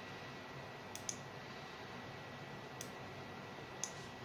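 Quiet room tone: a steady low hiss with a faint thin high tone, broken by four faint short clicks, two close together about a second in, one near three seconds and one near the end.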